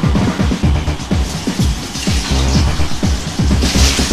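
Tracker module music from FastTracker, played through a homemade stereo Covox parallel-port resistor DAC: an electronic track with fast, punchy kick drums that each drop in pitch, over a bass line. A hissing cymbal-like hit comes near the end.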